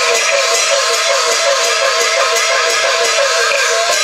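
Yue opera instrumental accompaniment: a fast repeating figure of short falling notes, about four a second, over a steady beat of percussion strokes.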